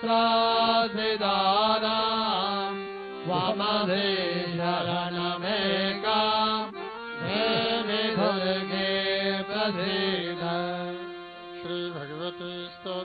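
Sanskrit hymn to the goddess Durga chanted to a melody in phrases with short breaks, over a steady sustained drone.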